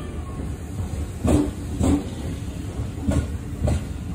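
JR Central 373 series electric train moving off slowly, with a low rolling rumble. Its wheels clack over a rail joint in two pairs of beats, one bogie after the other under each passing car, the clacks about half a second apart within each pair.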